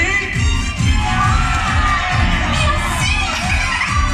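Audience, many of them children, shouting and cheering over stage-show music with a steady beat.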